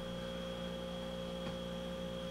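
Steady electrical hum, an even low drone with a thin high whine above it, unchanging throughout.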